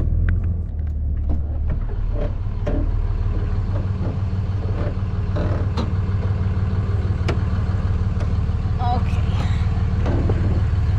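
Vehicle engine running, heard from inside the cab as a steady low hum. Scattered clicks and knocks of handling inside the cab sound over it.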